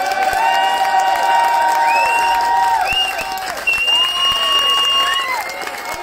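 Concert audience applauding and cheering, with several long, high held cries from different voices overlapping above the clapping.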